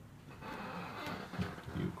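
Rustling with a few light clicks as a handheld phone is moved, then a man's voice starts near the end.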